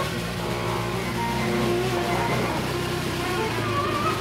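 Live improvised noise music with amplified guitar and electronics: a dense, steady wash of sound with held, slowly shifting tones over a low drone.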